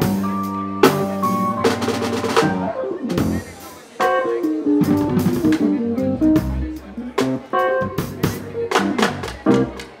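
Live instrumental passage on electric keyboard and drum kit: keyboard notes and chords over snare, bass drum and cymbal hits, briefly thinning out a little before four seconds in.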